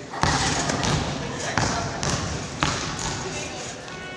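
Trampoline bed thudding as a gymnast lands and rebounds: three landings, a little over a second apart.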